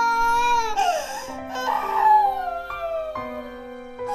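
A baby crying in long wails: a held cry, then another that slides slowly down in pitch, over soft background music.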